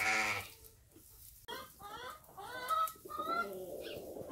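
A newborn lamb bleats once, briefly, at the start, then a chicken makes several short calls in quick succession.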